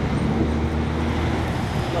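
City road traffic, with a vehicle engine giving a steady low hum that drops away after about a second and a half.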